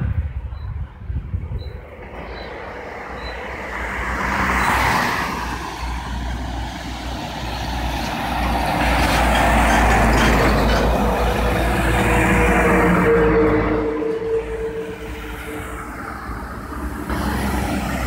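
Road traffic passing close by: one vehicle goes past about four to five seconds in, then heavy trucks pass, loudest from about nine to thirteen seconds with a steady engine drone. Another vehicle approaches near the end.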